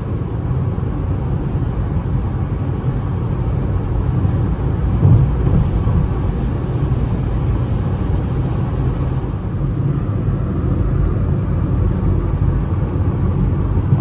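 Steady cabin noise of a Citroën C3 1.0 at highway speed in heavy rain: rumble of tyres on the wet road and wind, with rain on the windscreen. There is a brief swell about five seconds in.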